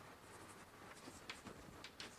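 Chalk writing on a blackboard: faint scratching strokes, with two sharper chalk taps in the second half.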